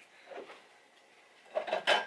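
Quiet kitchen room tone, then a couple of sharp knocks about a second and a half in as a bowl is fetched from the kitchen cupboards.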